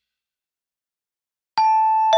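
Silence, then about one and a half seconds in a single bell-like chime note is struck and rings on.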